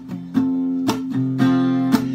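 Strummed acoustic guitar chords, re-struck about twice a second, playing as the accompaniment between sung lines of a song.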